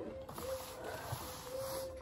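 Faint rustling of paper banknotes being handled and spread out, over a faint steady hum.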